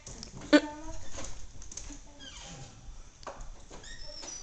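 A small dog giving one short, loud bark about half a second in, followed by faint high chirps and whistles from a cockatiel.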